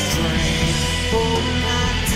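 Rock band recording in an instrumental passage: electric guitar, bass and drums playing together, with cymbal hits at the start and near the end.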